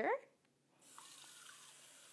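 Kitchen faucet turned on about a second in, a steady stream of water running into a plastic measuring cup.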